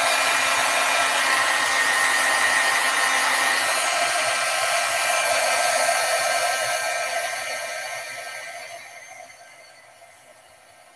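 Wagner electric heat gun blowing hot air with a steady whine, melting gold embossing powder on a card. The sound dies away over the last few seconds.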